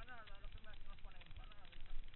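A person talking indistinctly for most of the first second and a half, over the low rumble and small rattles of a mountain bike rolling along a dirt trail.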